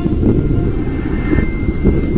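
Motorcycle riding along a rough road, its engine and the wind making a steady low rumble.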